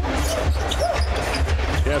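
Basketball dribbled on a hardwood arena court: repeated low thumps of the ball hitting the floor.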